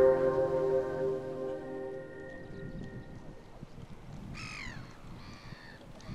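A held chord of background music fading away over the first few seconds. About four seconds in, a gull gives two short, falling cries, the second fainter.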